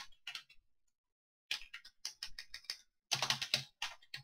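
Computer keyboard being typed on: quick runs of keystroke clicks, with a pause of about a second near the start and a fast flurry of keys about three seconds in.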